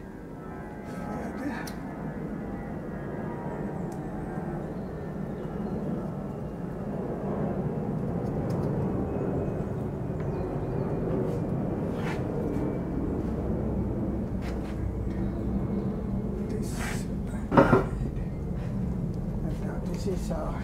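Steady low rumble of background noise, swelling a few seconds in, with faint light scrapes and clicks of a craft knife scraping bark off yew branches to make jins, and one sharp knock near the end.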